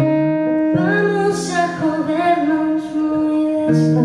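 Acoustic guitar chords ringing, with a woman singing a drawn-out phrase over them from about a second in until nearly three seconds in.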